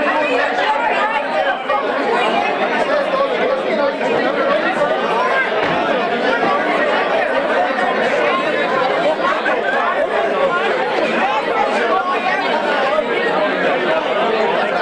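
Steady crowd chatter: many people talking over one another in a packed pub.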